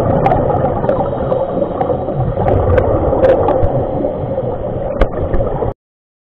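Scuba regulator exhaust bubbles heard underwater: a steady bubbling rumble with scattered sharp pops and clicks. It cuts off suddenly just before the end.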